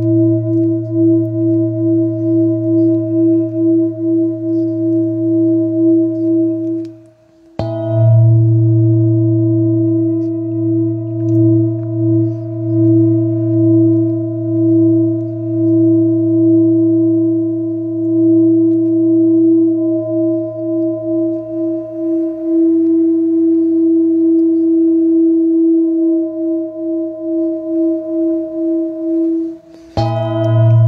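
Hand-held metal singing bowl kept sounding, most likely by a mallet rubbed around its rim: a steady, wavering hum with a low drone beneath it. About seven seconds in the tone stops briefly, the bowl is struck once, and the hum carries on; it stops again just before the end, where another strike follows.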